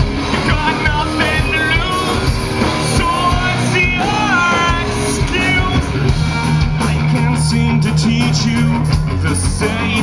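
Alternative metal band playing live and loud: distorted electric guitars, bass and drums, with a melodic line bending in pitch through the first half and a held low note in the second half under busy drumming.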